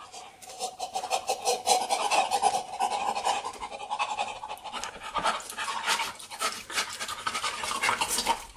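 Two people panting hard through open mouths in rapid huffing breaths, with a drawn-out voiced moan over the first half: reacting to a mouthful of hot sausage.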